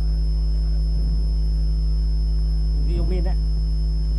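Steady electrical mains hum in the sound system, with a thin high-pitched whine above it; a faint voice comes through briefly about three seconds in.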